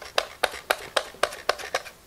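Potatoes being pushed quickly across a mandoline slicer's blade, a crisp slicing stroke about four times a second.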